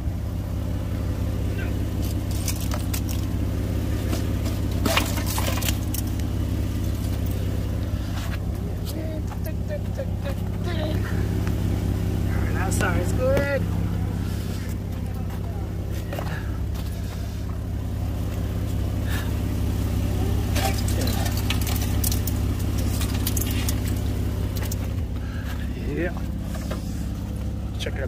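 Jeep engine idling steadily, with scattered sharp knocks and clatters as chunks of ice are knocked loose from under the body and wheel wells.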